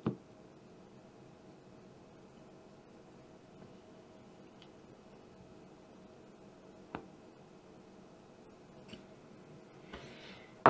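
Faint clicks of a screwdriver and small metal parts as a screw is tightened on a homemade Morse code key: one sharp click right at the start, another about seven seconds in, and a couple of fainter ticks, over a faint steady hum.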